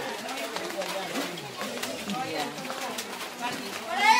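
Low, indistinct voices talking, with a few faint clicks.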